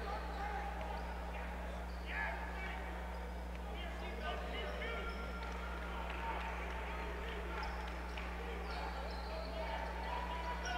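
Indoor basketball gym ambience: the crowd talks in the stands over a steady low electrical hum.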